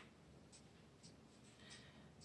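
Near silence with a few faint, soft scrapes and ticks of a tool spreading paint along the edge of a canvas.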